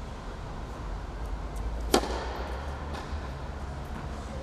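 A tennis racket striking the ball once, sharply, about two seconds in, with a short echo from the covered hall. Fainter ball hits from other courts and a steady low hum of the hall sit underneath.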